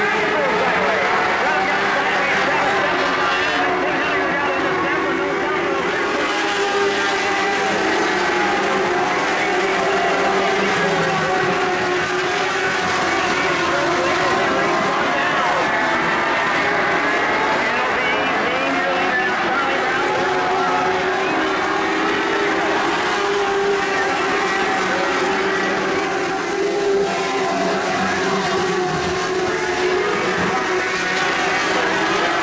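A field of dirt-track modified lite race cars running together at racing speed, several engines overlapping, their pitches rising and falling as the cars go through the turns.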